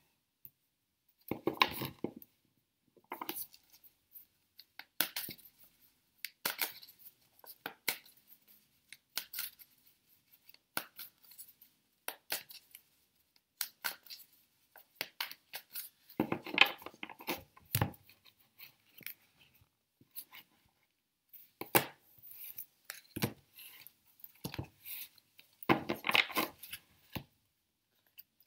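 A deck of tarot cards being shuffled and handled over a wooden table: irregular soft card slaps, riffles and taps, with louder flurries of shuffling near the start, about halfway and near the end.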